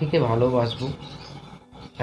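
A man's voice speaking for about a second, then a short lull.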